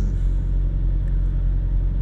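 Steady low rumble of a car heard from inside its cabin.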